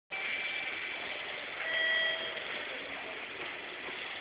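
Steady noise of a train station concourse, with a couple of short electronic beeps. The louder beep comes at about a second and a half to two and a half seconds.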